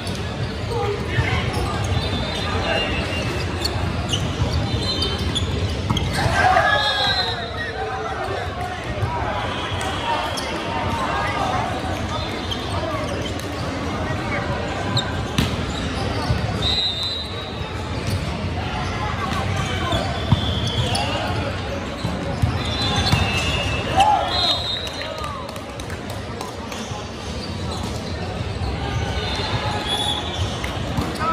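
Gym noise during an indoor volleyball match: sneakers squeak briefly on the hardwood court now and then, balls hit and bounce, and players and spectators call out, all echoing in the large hall.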